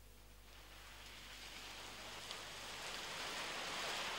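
Steady rain, fading in from near silence and growing gradually louder.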